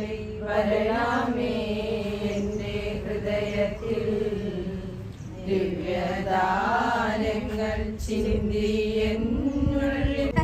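A group of women's voices, nuns among them, chanting a prayer together in unison on long, held notes, with a short break about halfway through before they go on.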